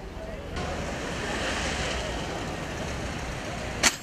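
A vehicle driving slowly over paving stones makes a swelling noise of tyres and engine, with the murmur of a crowd under it. There is one sharp click just before the end.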